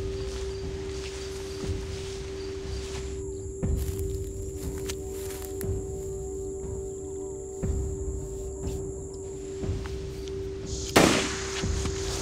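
Tense film score: a sustained drone with a low thud about every two seconds and high held tones in the middle stretch. About eleven seconds in, a single sharp, loud crack.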